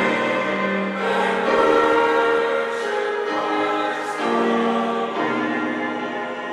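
Church choir singing a hymn in parts, long held chords changing about every second.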